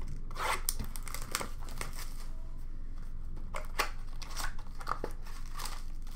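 Trading-card pack wrappers and plastic crinkling and tearing as hockey card packs are opened and the cards handled. There are bursts of crackling in the first second and a half and again about midway.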